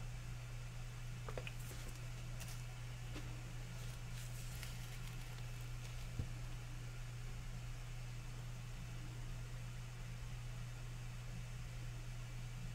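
Steady low hum of room tone with faint taps and rustles of gloved hands handling a paint bottle and tilting a canvas. One light knock comes about six seconds in.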